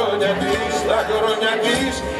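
Live Greek laïkó band, with bouzoukia, acoustic guitars, bass and drums, playing a song while a male voice sings over it.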